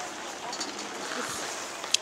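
Outdoor background noise with faint voices in it, and one sharp click just before the end.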